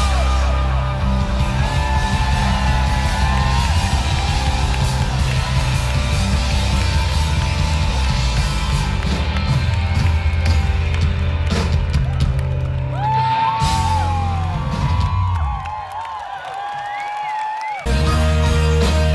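A live rock band with electric guitars, bass, drums and keyboards playing loud, heard from within the crowd. Near the end the bass and drums drop out for about two seconds, leaving only higher held melody lines, then the full band comes back in.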